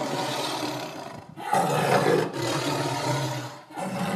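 A tiger roaring: a run of long, loud roars with short breaks between them, about a second and a half in and again near the end.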